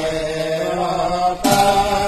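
A voice holding a long line of devotional chant (naam-prasanga), with large brass hand cymbals struck once about one and a half seconds in, leaving a bright ring.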